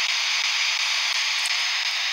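Steady, loud hiss of radio static from a small handheld speaker, a ghost-hunting spirit box scanning between stations.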